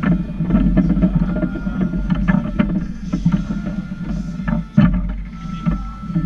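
Table-football play on a Lettner table: the hard ball is struck by the plastic figures and rebounds off the table, giving quick irregular clicks and knocks, with one louder knock near the end.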